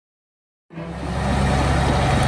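Tigercat tracked forestry mulcher's diesel engine running steadily. It comes in abruptly after a brief silence.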